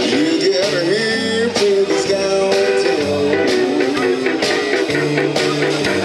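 Live blues band playing an instrumental break: electric guitar lead bending notes over bass and a steady drum-kit beat.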